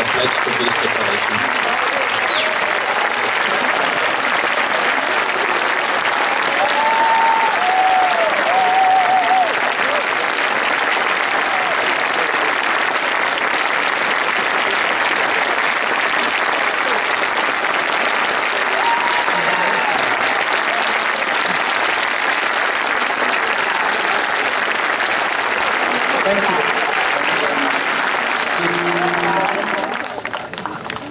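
Large audience applauding steadily, a continuous dense clapping, with a few brief voices rising above it.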